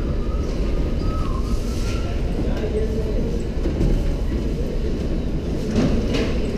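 Steady low rumble of background noise, with faint voices in the distance.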